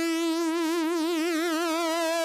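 Nord Stage 3 synthesizer lead, a sawtooth Minimoog Lead 2 patch, holding one note. Mod-wheel vibrato comes in near the start, wavers the pitch about five or six times a second, and eases off to a steady tone near the end.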